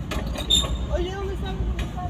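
Low, steady engine and road rumble inside a car driving slowly. A brief high squeak comes about half a second in, and a faint wavering tone follows about a second in.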